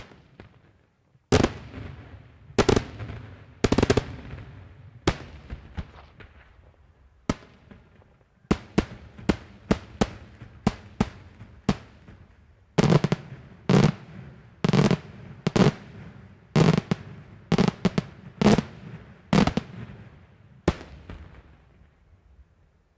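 Daytime aerial fireworks shells bursting in a run of sharp bangs, each trailing off in an echo. A few spaced bangs come first, then a quick run of smaller reports in the middle, then heavier bangs in close succession toward the end.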